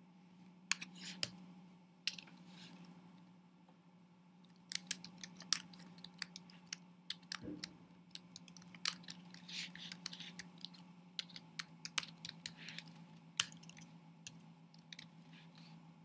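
Typing on a computer keyboard: irregular runs of key clicks, a few at first and then a quicker, denser run from about five seconds in. A faint steady low hum lies under it.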